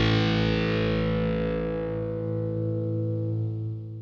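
Final distorted electric guitar chord of a punk rock song ringing out and slowly dying away, its brightness fading first, with no drums.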